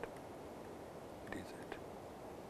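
A quiet pause filled by steady low recording hiss, with a faint murmured vocal sound from the lecturer about one and a half seconds in.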